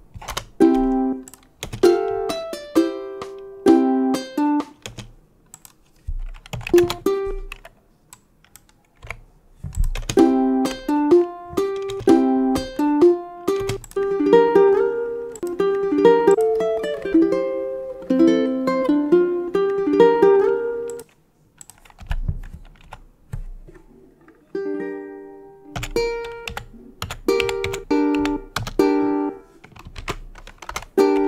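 Short ukulele fingerstyle phrases played back from a recording, stopped and restarted several times, with computer keyboard key clicks in the gaps.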